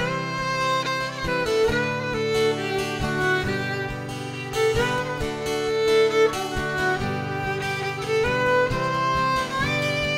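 Instrumental break of a folk song: a fiddle plays a sustained, sliding melody over a steadily strummed Epiphone acoustic guitar.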